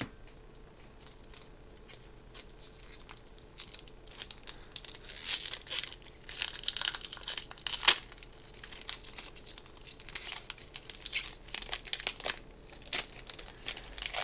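Foil wrapper of a Magic: The Gathering booster pack being crinkled and torn open by hand. It starts a few seconds in as a run of short crackles, with one sharp snap about eight seconds in.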